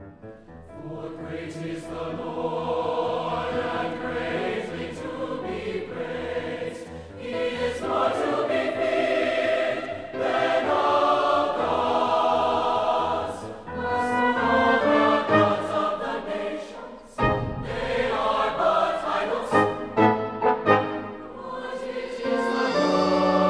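Mixed choir singing a sacred choral anthem with brass and piano accompaniment. After a brief dip, a low drum stroke lands about three-quarters of the way through.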